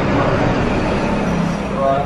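Sweet dough balls deep-frying in a large kadai of oil, a steady sizzle, with people talking in the background and a voice briefly near the end.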